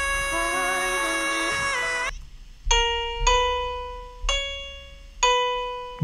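A male pop singer holds a high note, around C sharp five, over backing music until about two seconds in. Then come four single piano notes, each struck and left to ring and fade.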